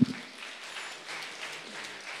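Audience applauding, an even patter of many hands clapping, with a brief voice sound at the very start.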